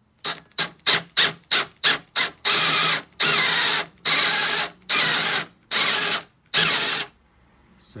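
Electric drill with a 3/4-inch spade bit boring out an aluminium oil drain flange to enlarge its threaded bore. The trigger is pulsed: about seven short bursts over the first two seconds, then six longer runs of half a second to a second each, stopping about a second before the end.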